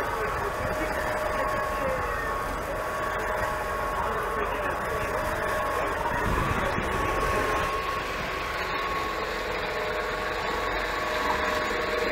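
Two solar-powered electric outboard motors driving a pontoon ferry, running steadily with a constant whine over the rush of churned water.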